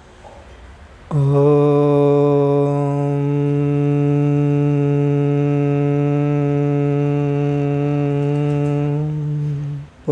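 A man chanting a single long Om on one steady low note, held for about eight and a half seconds from about a second in. Its tone shifts slightly about three seconds in, and it fades out just before the end.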